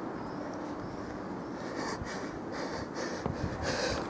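Quiet outdoor background noise: a steady low hiss with a few faint taps.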